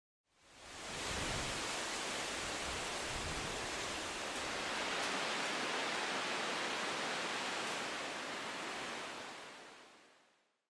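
A steady rushing hiss of noise spread across all pitches, fading in over the first second and fading out near the end, with a low rumble underneath in the first few seconds.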